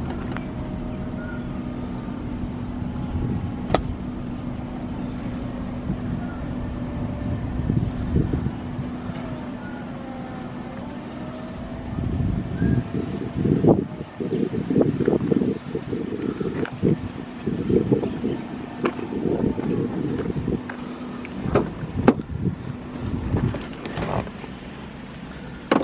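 BMW 120i convertible (E88) electro-hydraulic soft-top folding: a steady pump hum that stops as the roof finishes near the end, with sharp clicks from the mechanism and irregular low rumbling through the second half.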